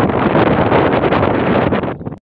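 Wind buffeting the microphone: a loud, steady rushing rumble with no break.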